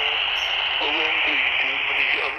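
Quansheng UV-K6 handheld with an HF receive board, tuned to 14.215 MHz in the 20-metre amateur band and playing received single-sideband voice through its speaker: a faint, distant voice under steady hiss.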